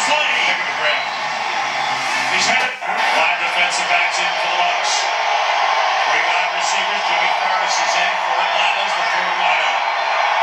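Football telecast audio played through a TV speaker: indistinct voices over steady stadium crowd noise, with a brief dip about three seconds in where the recording cuts.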